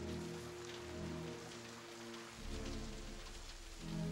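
Steady rain falling, under low held notes of a film score that change about two and a half seconds in.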